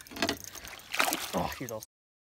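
Water splashing and sloshing as a hooked bass thrashes at the surface beside the boat while it is brought to the net, under a short exclamation. The sound cuts off abruptly just before the end.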